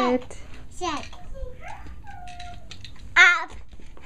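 A toddler's voice: short wordless babbling and calls, with one loud, high squeal about three seconds in.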